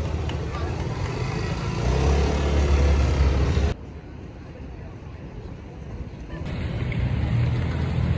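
Outdoor city street ambience: a steady low rumble with people talking in the background. It drops suddenly about four seconds in and builds back up near the end.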